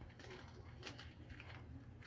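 Near silence with a few faint clicks and rustles from a plastic light-up cat mask being handled.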